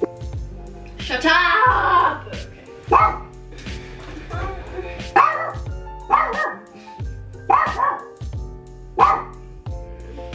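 Small dog barking repeatedly, about six sharp barks one to two seconds apart, over background music.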